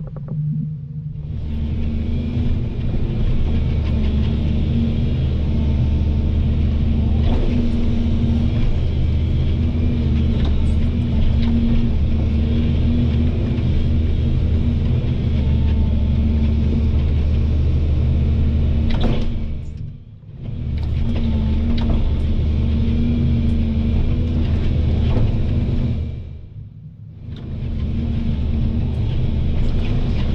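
Volvo EC220 DL excavator's diesel engine running steadily under working load, with a few sharp knocks. It drops away briefly twice, about two-thirds of the way through and near the end.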